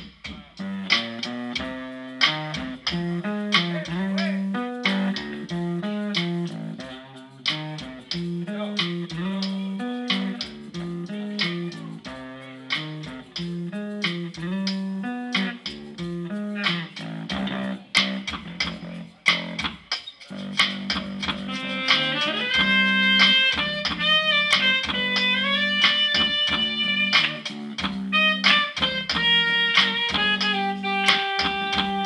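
Live band music: a bass guitar plays a repeating riff over a steady percussive beat. Higher held melody notes come in about two-thirds of the way through.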